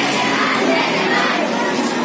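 Many schoolchildren's voices shouting together, a steady crowd sound of overlapping voices.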